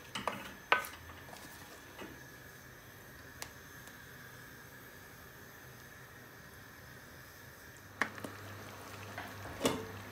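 Wooden spoon stirring a thick curry sauce in a metal frying pan, knocking sharply against the pan a few times in the first seconds, the loudest knock a little under a second in. Then a steady low simmering hiss from the sauce reducing on a high gas flame, and near the end a couple of knocks as the glass pan lid is handled.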